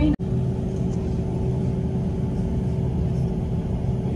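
Steady low rumble of a moving vehicle heard from inside its cabin, with a faint steady hum. It starts just after a brief cut-out at the very beginning.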